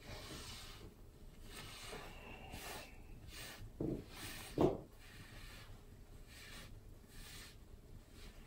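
A paper towel wiping a kitchen countertop in soft, repeated swishing strokes, with two short, louder sounds about four seconds in.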